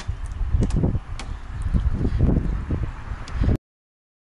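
Footsteps on a wooden deck ramp, a thump about every half second, over a low rumble of wind on a small action-cam microphone. The sound cuts off abruptly to silence about three and a half seconds in.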